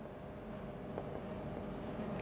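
Marker pen writing on a whiteboard, faint, with a light tap about a second in.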